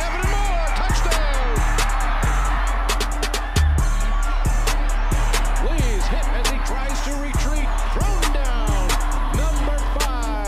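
Background music with a heavy, steady bass, a regular beat of sharp hits and sliding pitched sounds over the top.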